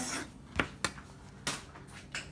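Chef's knife cutting through a zucchini and striking a plastic cutting board: three short, sharp knocks, two close together and a third about half a second later.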